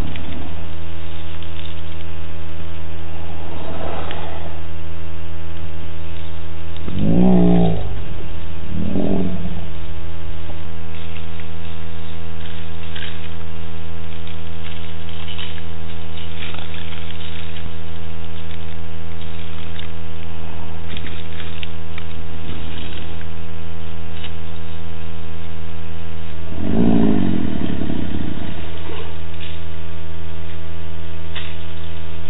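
A loud, steady electrical hum, a low buzz with several fixed overtones, runs without change. Three short, louder sounds rise over it, about seven, nine and twenty-seven seconds in: a small dog growling as it plays.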